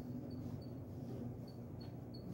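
Polishing cloth rubbed over a steel sword guard, giving faint, short high squeaks a few times a second over a low steady hum.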